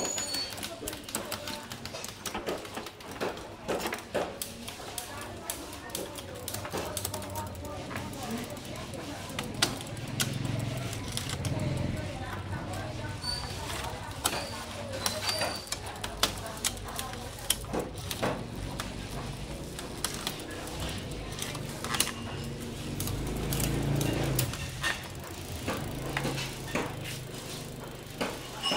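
A mountain bike's 3×10, 30-speed Shimano drivetrain cranked by hand on a stand: the chain runs over the cassette and chainrings while the spinning rear wheel's freehub ticks. Frequent irregular clicks come from the gear changes.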